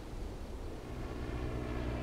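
Steady low drone of a light propeller aircraft's engine in flight.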